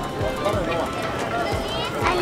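A crowd of people talking in the background, with regular low thuds about two to three a second.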